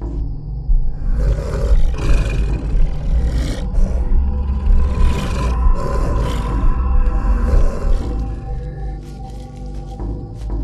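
Horror-film sound design: a heavy low rumble under eerie music, with a monster's roars and growls surging over it several times. It starts abruptly and eases off near the end.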